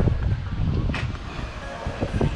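Wind buffeting the microphone in an uneven low rumble, with a sharp click about a second in.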